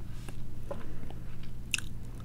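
Stylus scratching and tapping faintly on a drawing tablet as words are handwritten, with one sharper click near the end, over a steady low hum.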